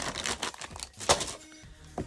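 Thin plastic packaging crinkling and rustling as a shrink-wrapped pack of plastic containers is grabbed and slid across a cutting mat, with a loud crackle about a second in.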